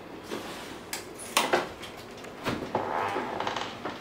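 A few sharp clicks and knocks, with a short rustling stretch near the end, as kitchen doors and fixtures are handled in a small room.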